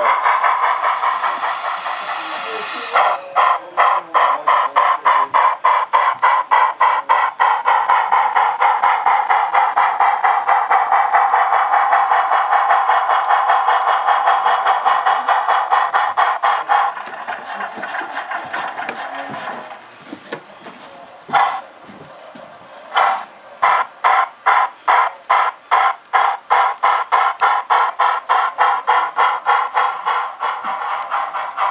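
Sound effects from a sound-equipped HO scale model steam locomotive. A steady tone lasts a few seconds, then a regular beat follows at about two to three a second. The beat stops about halfway through and starts again a few seconds later.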